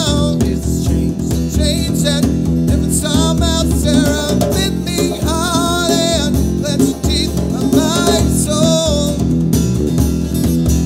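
Live acoustic band music: a man singing over acoustic guitar, a hand-played djembe and electric bass.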